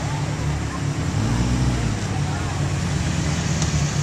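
Ferrari sports car engines running at low speed as the cars roll by, a steady low rumble.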